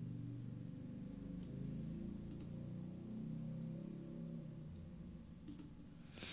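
A few faint computer mouse clicks over a low background hum.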